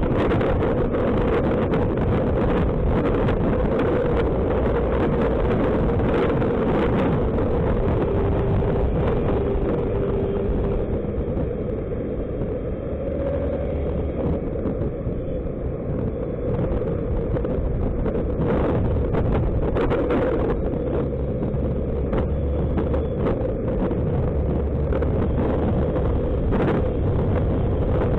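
Suzuki Burgman scooter on the move: wind rushing over the microphone mixed with engine and road noise. It eases off a little around the middle as the scooter slows from about 50 to 30 km/h, then builds again as it speeds back up.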